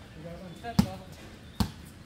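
A basketball dribbled on a hard court: two bounces, a little under a second apart.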